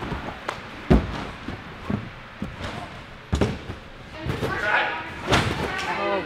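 Bodies landing on trampoline beds and padded crash mats: a handful of irregular heavy thuds, the loudest about a second in and twice more past the middle, in a large echoing hall.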